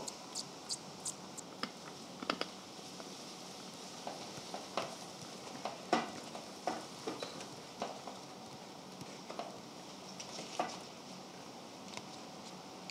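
Scattered light clicks and taps of a plastic paint cup filled with mixed paint being handled and fitted onto a spray gun, over faint hiss.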